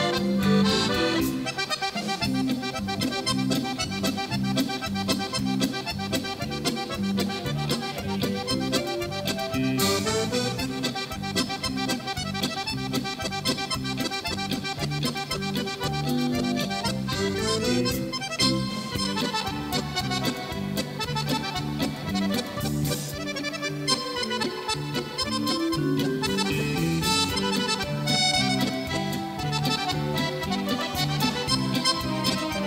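Lively accordion music played live by a small band, with electric guitar accompaniment; the accordion plays quick runs of notes up and down over a steady beat.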